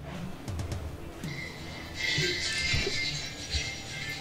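Background film music: soft low beats, turning brighter and fuller about halfway through.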